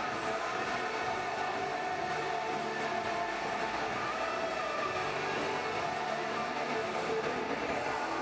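Steady, echoing ice-arena ambience with music playing over the public-address system.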